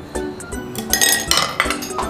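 Chopsticks clinking against a ceramic ramen bowl while lifting noodles, with a cluster of sharp clinks from about a second in. Background music plays throughout.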